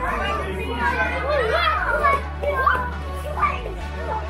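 Many children's voices chattering and calling out together, over a steady low bass line of background music.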